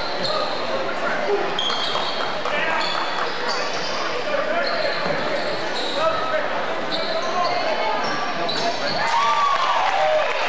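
Basketball game sounds in a large, echoing gym: sneakers squeaking sharply and briefly on the hardwood court again and again, and a ball being dribbled, over a constant murmur of crowd voices. A voice calls out near the end.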